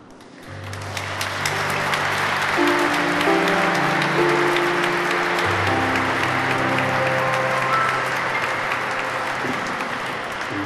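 Audience applauding, starting about half a second in and going on throughout, with the band holding soft, low sustained chords underneath.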